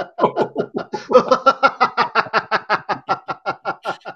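Two men laughing heartily together in a quick, unbroken run of ha-ha pulses, about seven a second. It is deliberate laughter-yoga laughter, laughing for no reason into a pretend 'giggle phone', heard over a video call.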